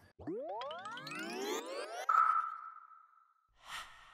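Outro sound logo: several tones sweep upward together for about two seconds and settle into one high ringing tone that fades out, followed by a short whoosh near the end.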